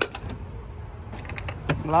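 A 1990 Ford Bronco driver's door is opened by its outside handle: a latch click at the start, a few light clicks, then one sharper click near the end as the door swings open.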